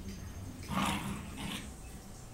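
A Coton de Tulear puppy giving two short, rough play vocalisations: a louder one just under a second in and a shorter one about half a second later.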